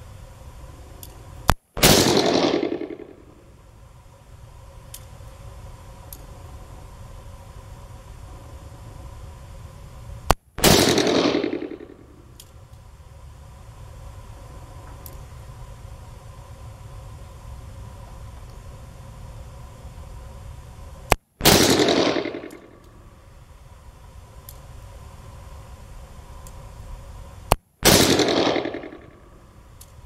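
Smith & Wesson Model 57 .41 Magnum revolver with a 4-inch barrel firing 175-grain Winchester Silver Tip loads: four single shots several seconds apart, each followed by about a second of echo.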